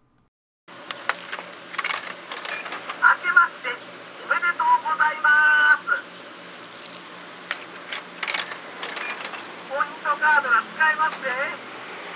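Japanese drink vending machine's recorded voice saying "Akemashite omedetou gozaimasu" (Happy New Year), then a second short spoken prompt reminding the buyer to use a points card. Between the phrases come sharp clicks from the machine's buttons and coin mechanism, over a steady hum from the machine.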